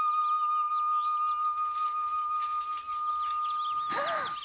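Film background score: a single high flute-like note held steady, with faint high chirps above it.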